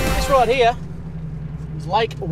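Steady low drone of a four-wheel drive's engine and drivetrain heard from inside the cab while driving.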